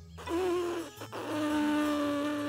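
Two buzzy, trumpet-like toots blown through a stethoscope used as a toy trumpet. The first is short and wavers a little, and the second is longer, steady and slightly lower.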